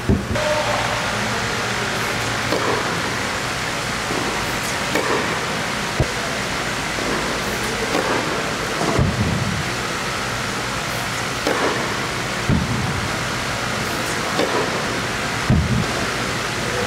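Tennis balls struck by a racket and bouncing on an indoor hard court: short sharp pops every few seconds, the crispest about six seconds in. A steady loud rushing noise runs underneath.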